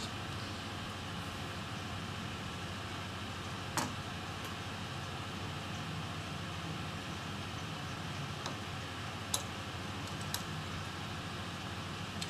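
Steady fan-like hiss of room noise, with a few faint sharp clicks of a small hand tool working on a laptop motherboard, the clearest about four seconds in.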